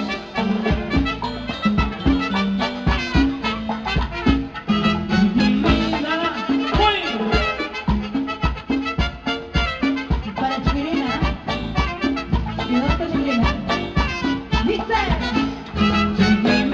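Live Latin dance band playing salsa-style dance music, with brass, electric bass and drum kit, at a steady driving rhythm.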